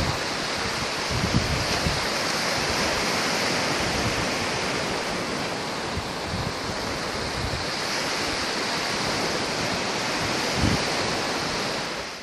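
Small sea waves breaking and washing over rocks and sand at the shoreline: a steady wash of surf, with a few low thumps about a second in and again near the end.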